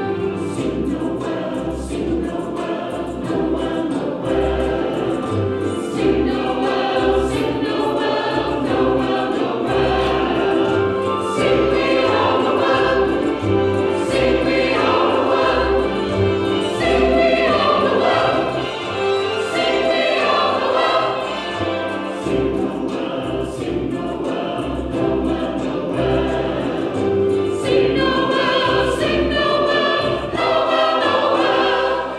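Mixed church choir singing a Christmas cantata anthem over instrumental accompaniment with a steady bass line.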